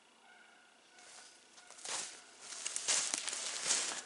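Footsteps crunching in snow, starting about two seconds in and growing louder.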